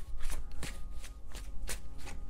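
A tarot deck being shuffled by hand: a quick, irregular run of card snaps and slaps, about four a second.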